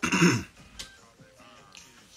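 A man clearing his throat once, a short loud rasp in the first half second, followed by faint background music.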